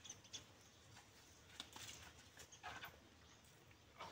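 Near silence, with a few faint, short clicks and rustles.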